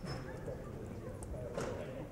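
Indistinct murmur of voices in a large room, with a few light clicks and knocks from people moving about.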